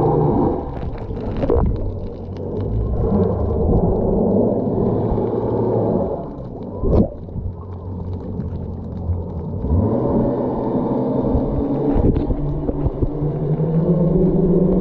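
Muffled underwater sound picked up by a camera held below the surface while snorkeling: a continuous low rumble of water with a steady low hum running under it. Scattered clicks, and one brief sharp knock about seven seconds in.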